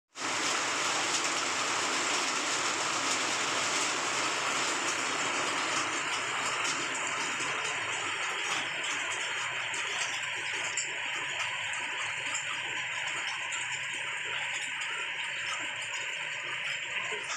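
Rain falling steadily, an even hiss of drops on wet pavement and foliage that eases slightly in the second half.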